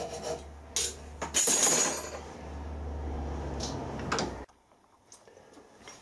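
Small hacksaw rasping across a steel bolt held in a vise, cutting a marking nick, with sharp metallic clinks and a louder clatter about a second and a half in, over a low steady hum. The sound cuts off abruptly after about four and a half seconds.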